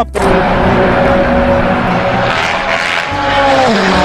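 Race car engine running at high revs on a circuit, a loud sustained note that falls in pitch near the end.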